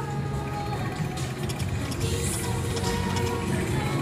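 Konami Sakura Lady slot machine playing its steady reel-spin music and sound effects during a spin, with a few short clicks.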